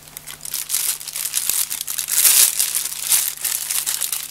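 Thin plastic bread wrapper crinkling as it is handled, a run of small crackles that is loudest about two seconds in.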